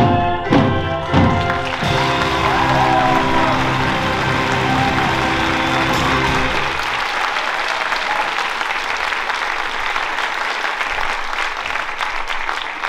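A live pit band ends a number with a few accented chords and a long held final chord that stops about seven seconds in. Audience applause starts about two seconds in and carries on after the music stops.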